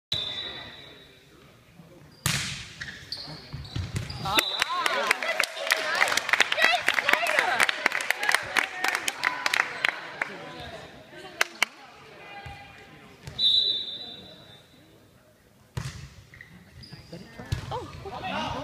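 Volleyball being struck and bouncing on a hardwood gym floor, many sharp hits packed together in the middle, with short high sneaker squeaks and players' voices echoing in the large hall.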